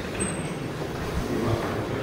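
Murmur of many people talking at once in a large hall, with a brief thin high tone about a quarter second in.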